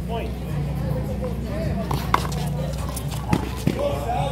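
Indistinct voices of people talking in the background over a steady low outdoor rumble, with a few sharp smacks, the loudest about two seconds in and two more near the end.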